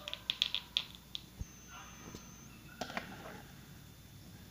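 Small plastic toy being handled: a quick run of faint clicks, a soft knock, then more clicks and rustle as the action figure on its ring stand is set down on a wooden floor.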